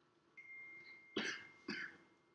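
A person coughing twice, about half a second apart.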